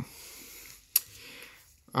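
Faint breathing in through the nose, with one sharp click about a second in.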